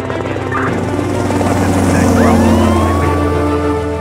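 Helicopter running overhead, its rotor chop under background music, swelling in loudness toward the middle, with a rising tone sweeping up a little past the middle.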